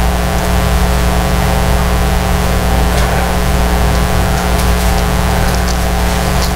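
Steady electrical mains hum and buzz through the church sound system, an unchanging drone with many evenly spaced overtones, with a few faint clicks of pages being handled.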